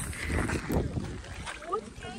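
Wind buffeting the microphone, with small waves lapping at the shallow edge of a salt lagoon.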